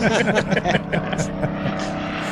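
Voices and laughter over an online call for about the first second, then a steady low hum of several held tones.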